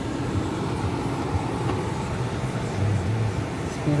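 Steady low rumble of a 2019 Bentley's engine idling, heard from inside the cabin.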